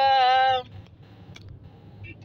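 A woman's voice holding one drawn-out vowel, a hesitation sound, for about half a second, then stopping. After that there is only the low steady hum of a car's interior.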